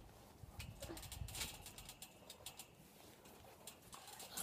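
Near silence: faint outdoor ambience with a few soft ticks.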